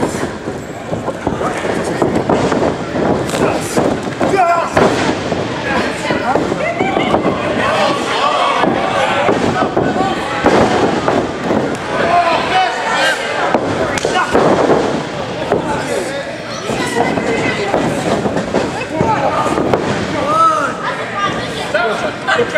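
Small crowd of spectators shouting and calling out, voices overlapping, broken by repeated sharp smacks and thuds of wrestlers striking each other and hitting the ring.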